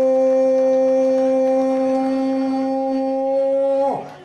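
A single horn note, blown to celebrate a goal, held steady for several seconds. It dips in pitch and cuts off just before the end.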